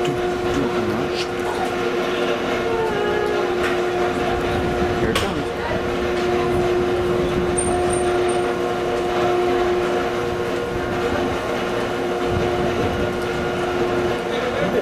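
Lifeboat davit winch running with a steady mechanical hum of several held tones over a noisy background, as the lifeboat is hoisted. A short high beep sounds a little past the middle.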